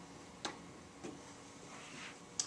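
Two faint, sharp clicks, about half a second apart, of a pen tapping on a whiteboard as a term is written, over a low steady room hum.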